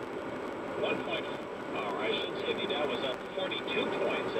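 Radio news speech from a car radio playing inside a moving car, over steady road noise.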